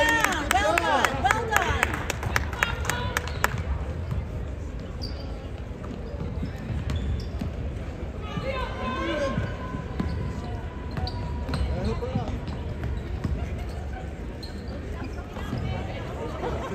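A basketball bouncing and sneakers squeaking on a hardwood court during play, busiest in the first few seconds and sparser after, over background talk from the stands.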